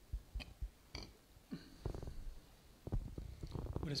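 Soft knocks, thuds and a few light clicks of objects being set down and handled on a cloth-covered altar, irregular and close to the microphone.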